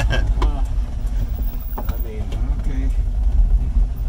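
Classic Fiat 500 driving, heard from inside its small cabin: the rear air-cooled two-cylinder engine and road noise make a steady low drone.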